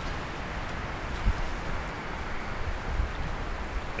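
Steady rushing noise of wind on the microphone, with a few low thumps.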